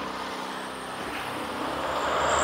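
Road traffic: a passing motor vehicle's engine hum, steady and rising a little near the end.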